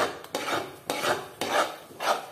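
Metal spoon stirring and scraping thick rice halwa in a metal pot, a scraping stroke about every half second. The halwa is thickening and is kept in constant motion so it does not stick to the bottom of the pot.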